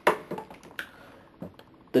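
A handful of light, irregular clicks and taps from handling a plastic toy action figure, the sharpest right at the start.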